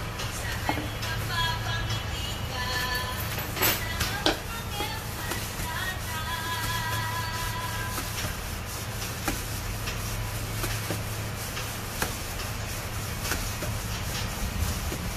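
Background music with a singing voice that stops about two-thirds of the way through. Two sharp clicks come a little before and just after four seconds in, over a low steady hum.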